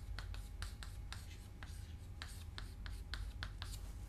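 Chalk writing on a blackboard: a quick, irregular run of short, faint scratching strokes and taps as an equation is written, over a low steady hum.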